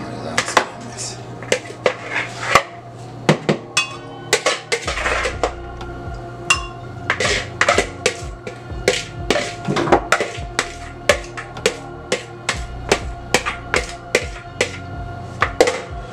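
A metal spoon knocking and scraping against a ceramic bowl and glass blender jar as chopped june plum is pushed into the jar: many sharp clinks at an uneven pace. Steady background music plays underneath.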